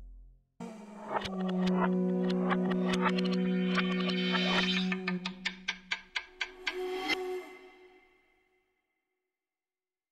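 Television channel ident's musical sting: a held low note with a stream of struck notes over it, breaking into a quick run of separate strikes about five seconds in, then dying away about eight seconds in.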